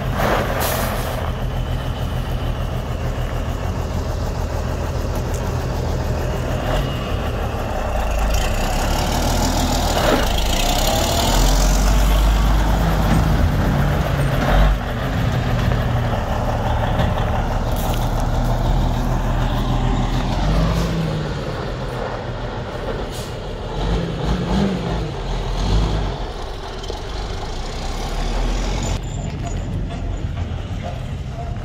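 Heavy diesel truck engine, the Cummins N14 Plus inline-six of a Western Star dump truck, running steadily while the dump body is lowered. A hiss of air comes in about eight seconds in and lasts a few seconds.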